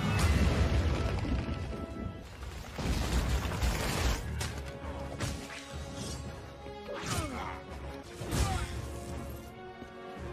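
Action-film soundtrack: music under a series of crashes and impacts, loudest just at the start and again around four and eight and a half seconds in, with some falling sweeps between them.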